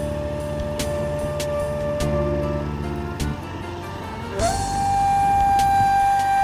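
Background music: a flute-like wind instrument holds long notes over a low drone. The note fades a little after two and a half seconds and is replaced by a new, higher held note about four and a half seconds in.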